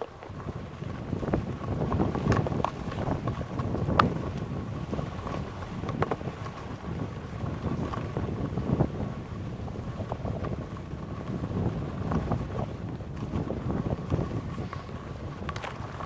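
Wind rushing over a helmet-mounted camera's microphone together with skis scraping and carving on groomed snow during a downhill run, the rush swelling and easing every couple of seconds with the turns. A few sharp clicks stand out, the loudest about four seconds in.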